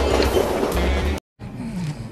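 Cartoon sound effect of a roller coaster car rattling and rumbling along its track over music. It cuts off abruptly about a second in, and quieter music follows.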